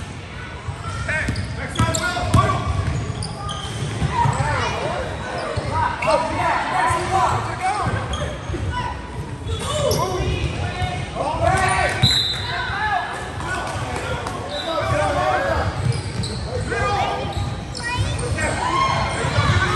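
Indoor basketball game on a hardwood court: a ball being dribbled, sneakers squeaking on the floor, and players and spectators calling out.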